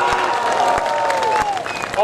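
A crowd applauding, dense clapping with a voice calling out over it in a long, falling shout during the first second and a half.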